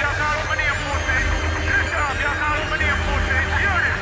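Electronic dance track with a chopped vocal sample whose short notes slide up and down in pitch, over a steady bass line.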